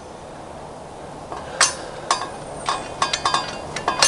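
A few sharp metallic clicks and clinks from the Sky-Watcher EQ6-R Pro mount and its tripod as the threaded primary shaft is fitted up into the bottom of the mount head. The loudest comes about one and a half seconds in, with a quick cluster near the end.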